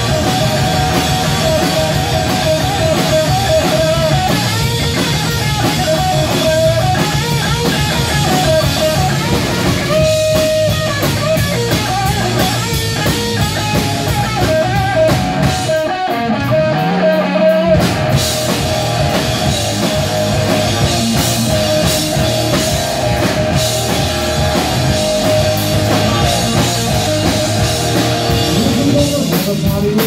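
Live rock band of electric guitar, bass and drum kit playing loudly, with no singing and the guitar carrying bending, sustained lead lines. About halfway through, the drums and cymbals drop out for about two seconds under a single held low note, then the full band comes back in.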